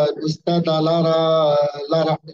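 A man's voice chanting in long held notes, with a short break about half a second in.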